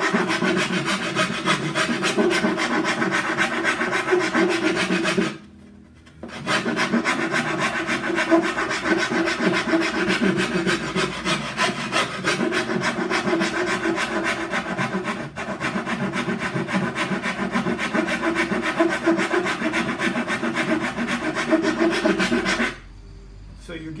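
A hand file scraping in quick, even strokes along the edge of a wooden cello back plate during rough edgework. There is a short pause about five seconds in, and the filing stops just before the end.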